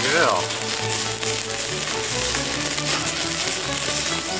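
Background music over the sizzle and crackle of meat skewers grilling over a flaming charcoal fire, with a short falling voice sound right at the start.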